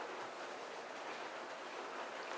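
Steady, even hiss of background noise with no distinct events: room tone.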